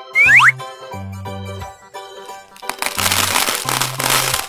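Children's background music with cartoon sound effects: a quick rising whistle-like glide near the start, then, from a little before the end, a loud dense crackling rattle as of many small plastic balls pouring into the toy blender.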